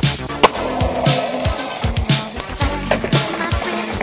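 Skateboard on a concrete curb under music with a beat: a sharp snap of the board about half a second in, then about a second of the board scraping along the edge.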